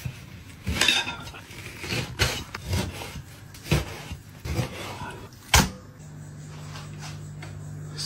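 Chinese cleaver chopping raw lamb into large chunks on a wooden chopping block: about six irregular chops, the last the loudest. A steady low hum starts about six seconds in.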